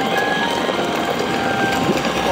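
Kids' battery-powered Arctic Cat ride-on toy driving along asphalt: its electric motor runs steadily and its plastic wheels roll on the road.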